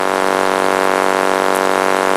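A loud, steady buzzing hum with many evenly spaced overtones, holding one pitch without change.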